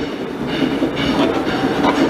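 Chalk scraping and tapping on a blackboard as a word is written, over a steady background noise.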